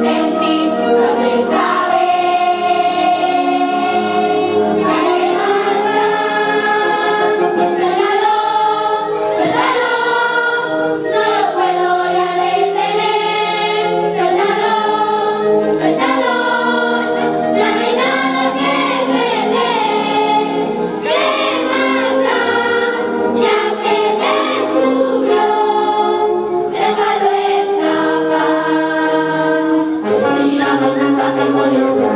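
A choir of children and young people singing a song together, backed by a live wind band, steady and continuous.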